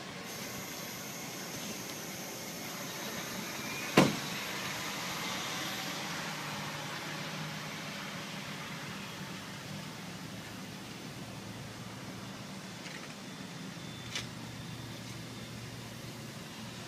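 Steady low hum of the Freightliner dump truck's Caterpillar diesel engine idling. A single sharp knock about four seconds in and a faint click near the end.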